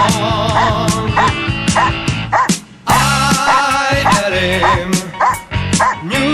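A Dobermann barking steadily at a helper in a protection blind, about two barks a second with a short break near the middle. This is the bark-and-hold, where the dog guards the cornered helper by barking instead of biting. Background music plays over it.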